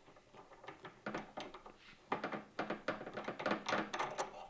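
Light, irregular clicks and scrapes of steel parts being handled: an ER collet nut is unscrewed by hand from a CAT40 tool holder and lifted off with its collet. The clicks become busier about halfway through.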